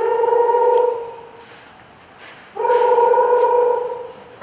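Mobile phone ringing: two long, steady rings, each a little over a second, with a pause between them.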